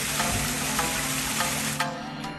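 Small garden waterfall splashing into a koi pond, a steady hiss of falling water over soft background music; the water sound cuts off abruptly just before the end.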